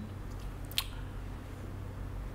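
Low, steady electrical hum from the idling valve guitar amp rig, with one short sharp click about three-quarters of a second in.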